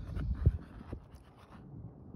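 A rubber vent-pipe boot being slid down over a roof vent pipe: light rubbing and scraping, with one dull knock about half a second in, over a low rumble.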